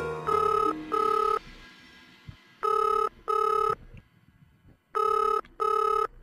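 Telephone ringing in a double-ring pattern: three pairs of short electronic rings, the pairs about two and a half seconds apart, the call not yet answered.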